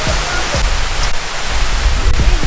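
Water pouring down the face of a tall semicircular water-wall fountain, a loud steady rush, with music playing underneath.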